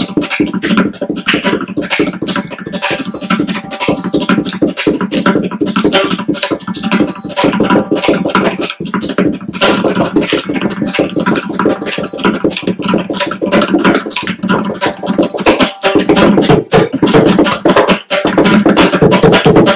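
Mridangam solo (thani avartanam): fast, dense strokes on the two-headed barrel drum, with a steady pitched drone beneath.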